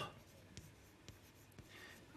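Faint chalk on a chalkboard, scratching lightly with a few soft taps as a word is written.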